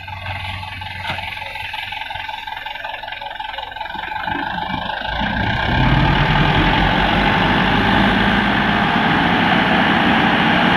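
The diesel engine of a Mitsubishi Fuso Canter dump truck idles, then speeds up about five seconds in and holds at higher revs as the hydraulic hoist begins raising the loaded tipper bed.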